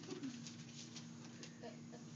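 Quiet classroom room tone with a steady low hum, and a brief soft murmur of a voice right at the start.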